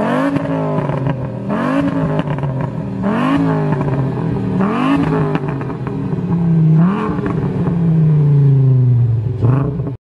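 Volkswagen Golf Mk4's 2.3-litre VR5 engine blipped through its exhaust at a standstill, about five quick rises and falls in revs. Near the end it makes one longer rev whose pitch sinks slowly over about two seconds, then one last short blip.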